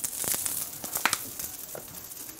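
Asparagus frying in butter in a hot cast-iron skillet: a faint sizzle with scattered crackles and pops, the sign that the pan is hot enough.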